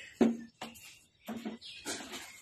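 A small child's short non-word vocal sounds, about four in quick succession, while playing with water at a bucket.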